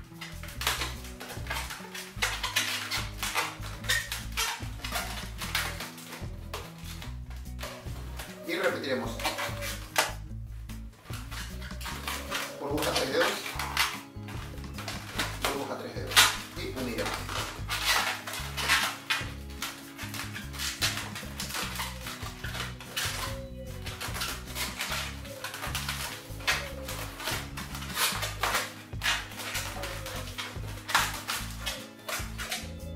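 Latex 260 modelling balloons being twisted and rubbed in the hands, with frequent short squeaks and rubbing scrapes, some squeaks sliding in pitch. Background music plays underneath.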